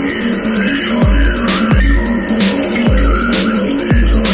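Industrial techno from a DJ mix: fast, even hi-hat ticks over a repeating bass-synth pattern, with gliding, squealing synth tones in the middle range. About a second in, a deep kick drum with a heavy low boom comes in and hits roughly once a second.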